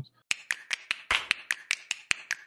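Sharp snapping clicks in a quick, even rhythm, about five a second, from an edited-in logo sting sound effect.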